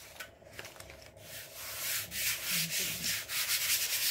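A hand rubbing a sheet of glittery adhesive-backed paper down onto a board, pressing it flat so it sticks: repeated scraping strokes that grow louder after the first second or so.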